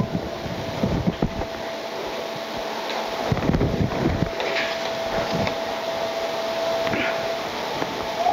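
Steady whirring mechanical hum like a fan, with a faint steady whine that stops near the end and a few soft knocks and clicks.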